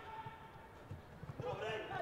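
Faint on-field sound of a football match with no crowd: distant players' voices calling and a few dull low thuds.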